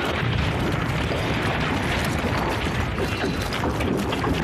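A steady, dense rumble with crackling all through it: a cartoon sound effect, with no clear tone or beat.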